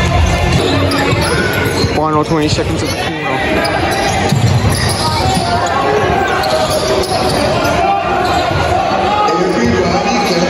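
Basketball being dribbled on an indoor court during live play, with players' footwork and crowd voices around it.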